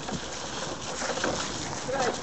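Rustling of a dog-drawn wagon rolling over dry leaves and wood chips, with the dog's paws on the same ground, mixed with wind on the microphone.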